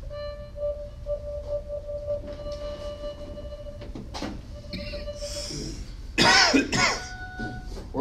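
Artiphon INSTRUMENT 1 played in its cello mode: a long held synthesized cello note, then shorter notes. A loud cough cuts in about six seconds in.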